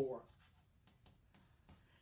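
Chalk writing on a chalkboard: a handful of faint, short scratchy strokes as a brief notation is written.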